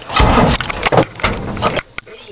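A vehicle being started after hot-wiring, without a key: a loud, rough, uneven burst of engine-like noise lasting about a second and a half.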